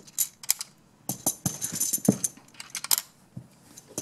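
Magformers magnetic plastic tiles clicking together as triangle pieces are snapped onto a toy vehicle frame and handled on a table. A series of light clicks and clacks, most of them between about one and three seconds in.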